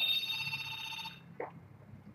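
A ringtone: several steady electronic pitches sounding together, dying away just over a second in, followed by one short faint blip.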